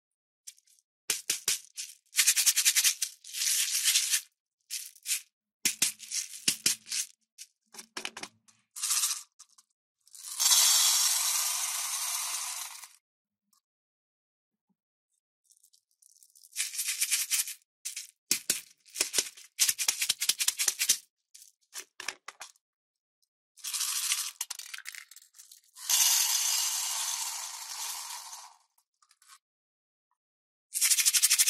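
Small beads poured from a little bottle into a heart-shaped baking tin, giving a dry rattling patter in several pours of two to three seconds. Between the pours come shorter rattles and clicks as the bead-filled cups are handled.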